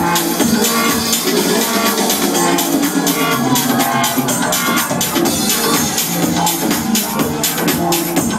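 Electronic dance music played loud over a club sound system from a DJ set, with a steady driving beat and little deep bass.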